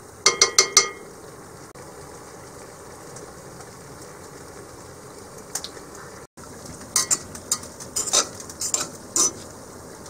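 A metal spoon taps four times in quick succession on a cast iron pot, each tap ringing briefly, over a steady sizzle of oil frying in a cast iron skillet. From about seven seconds a fork clinks and scrapes against the cast iron pot several times as it stirs the food.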